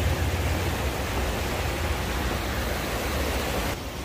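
A creek rushing over rocks: a steady rush of water that cuts off suddenly near the end.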